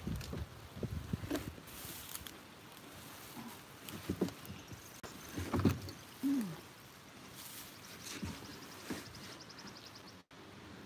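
Plastic kayak hull knocking and bumping irregularly as its occupant shifts about while it sits wedged against the bank, the loudest thump about five and a half seconds in. A short falling creak follows just after.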